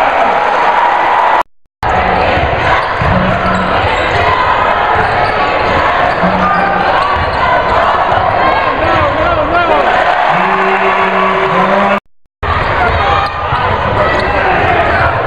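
Live gym sound of a basketball game: a ball bouncing on the hardwood court amid loud crowd voices and shouts. The sound cuts out twice for an instant, near the start and near the end.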